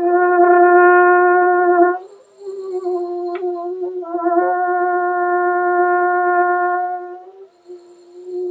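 French horn holding a written fourth-space C (concert F) at a steady pitch: a loud note of about two seconds, a softer stretch, then a long loud note of over three seconds that tapers off near the end.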